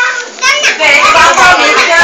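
Young children's voices talking, with a short break about a third of a second in.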